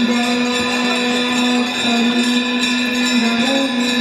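Hindu aarti devotional music: a voice holds long notes that step down and back up in pitch, over a steady metallic ringing of bells and jingling percussion.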